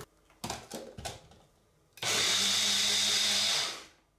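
Small personal bullet-style blender: a few plastic knocks as the cup is set onto its motor base, then the motor runs for about a second and a half with a steady whirring hum, blending soaked oats and water into oat cream, and winds down.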